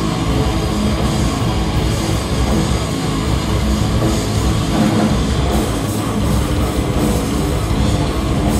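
Hardcore punk band playing live, a loud, dense wall of drums and heavy guitars, in a rough live bootleg recording.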